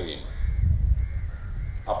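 Crows cawing faintly in the open air over a steady low rumble, during a short pause between a man's amplified words.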